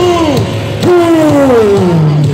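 Live band over a hall PA: a long note slides down in pitch, and a second one starts just under a second in and slides down the same way.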